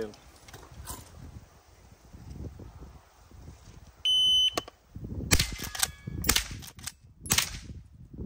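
An electronic shot timer beeps once about four seconds in. A Henry H001 .22 rimfire lever-action rifle then fires three shots, roughly a second apart, with the lever cycled between them.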